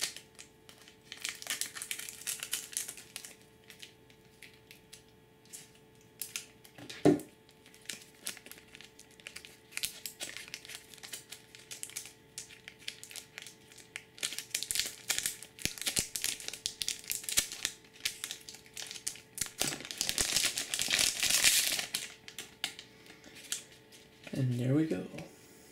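Crinkling of a Magic: The Gathering booster pack's foil wrapper as it is handled and torn open, in several rustling bursts. A single sharp knock about seven seconds in is the loudest sound.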